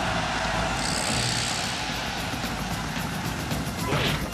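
Film trailer soundtrack: a loud, steady rushing roar of sound effects mixed with music.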